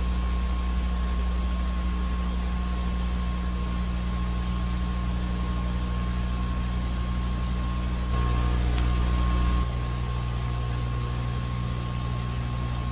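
Steady low electrical hum with a constant thin whine and an even hiss, with no race or crowd sound. It gets briefly louder for about a second and a half, about eight seconds in.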